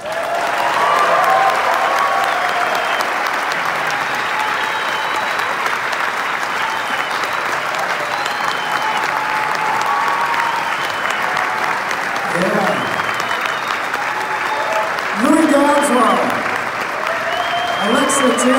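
Audience applauding, with cheers and a few whistles, as a big band number ends. A man's voice speaks over the applause in the last few seconds.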